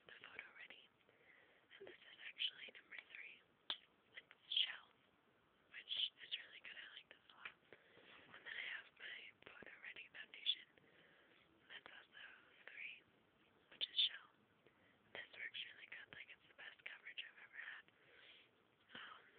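A person whispering throughout, quietly.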